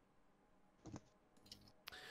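Near silence: room tone, with two faint short clicks, one about a second in and one near the end.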